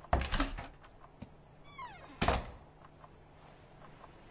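A door being slid and shut: a thump just after the start and a louder thunk about two seconds later, with a short falling squeak between them.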